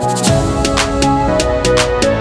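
Background music: an electronic track whose drum beat comes in right at the start and keeps a steady rhythm over sustained synth notes.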